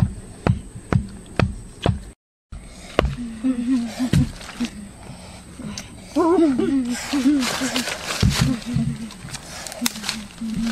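A wooden stake being hammered into the earth, about two sharp blows a second for the first two seconds; after a short break, boys talking.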